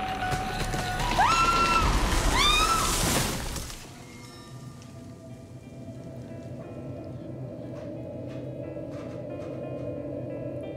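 A woman screams in pain twice, each cry rising and falling, over a loud crash-like noise that cuts off about four seconds in. Soft ambient music follows, with sustained tones and a few faint ticks.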